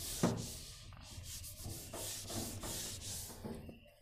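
Whiteboard eraser rubbing marker writing off the board in repeated back-and-forth strokes.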